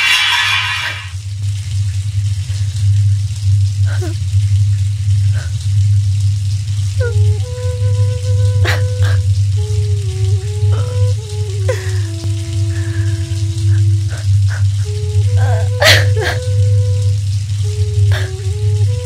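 Background score: a steady low drone, joined about seven seconds in by a slow melody of held notes that step up and down. A few brief splashes of water cut through it, the sharpest near the end.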